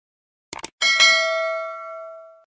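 Subscribe-button animation sound effect: two quick mouse clicks, then a bell chime that dings twice in quick succession and rings on, fading away.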